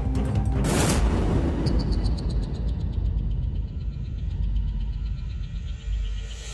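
Tense suspense score: a deep rumbling drone with a sharp hit about a second in, then a fast, even ticking pulse over the drone.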